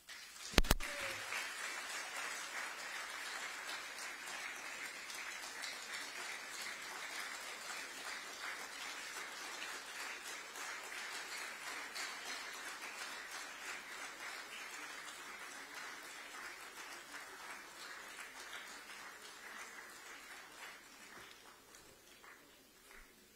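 A sharp knock about half a second in, then audience applause that builds at once and slowly dies away towards the end.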